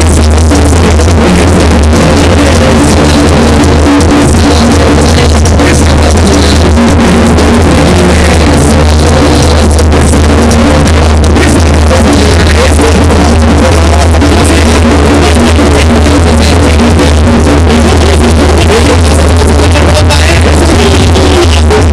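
Mexican banda brass band playing live. The recording is overloaded and distorted, pinned at full loudness with a heavy, blurred low end.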